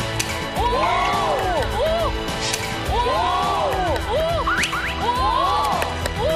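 Several voices exclaiming in amazement in long rising-and-falling "wow" and "ooh" calls, in bursts about a second, three seconds and five seconds in, over steady background music.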